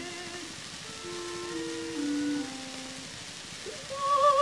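Quiet instrumental accompaniment from an early acoustic opera recording, playing a few held notes that step downward between the soprano's sung phrases, under steady record surface hiss and crackle.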